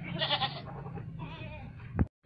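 A goat bleating: a short, wavering call near the start, with a fainter wavering call about a second later. A sharp click comes right at the end.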